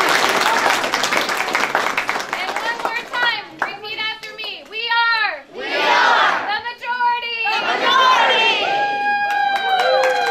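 A crowd of children and adults clapping and cheering, then a group of voices calling out together in long, drawn-out notes during the second half.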